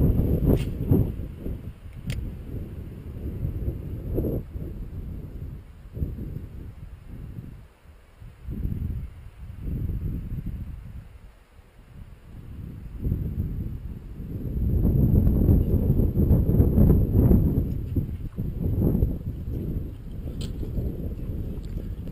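Wind buffeting the camera microphone in uneven gusts, a low rumble that dies down twice in the middle and builds again in the second half, with a few faint clicks.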